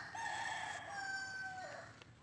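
A rooster crowing once: one long call of about two seconds that drops off in pitch at the end.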